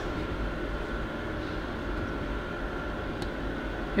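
Steady low background hum and rumble, even in level throughout, the room's machinery or ventilation noise.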